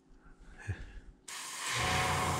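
Airbrush switched on about a second in: a sudden, steady hiss of compressed air spraying at the lure.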